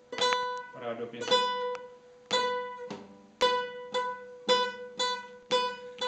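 Nylon-string classical guitar playing one and the same note, plucked six times at about one a second with each note left to ring. It is a left-hand position-change exercise: the same note is fingered at changing positions along the neck.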